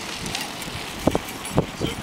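People laughing in a few short bursts.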